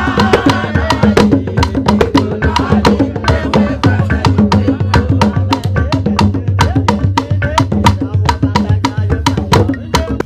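Traditional African dance music: a fast, even beat of wood-block and drum strokes, about five a second, with voices singing over it.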